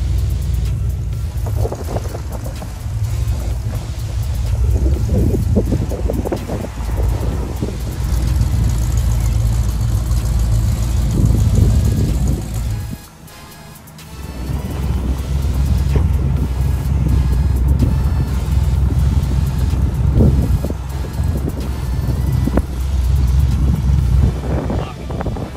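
Car engines running at low revs with a deep rumble, mixed with background music. There is a short drop in sound about thirteen seconds in.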